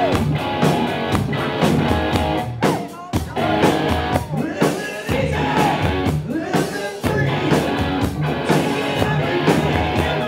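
Live rock band playing loudly, with drums and guitar under a male singer's vocal.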